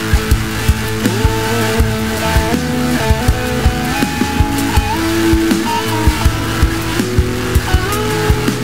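Instrumental passage of a stoner rock song: guitar lines with slides and bends over bass and a steady drum beat, no vocals.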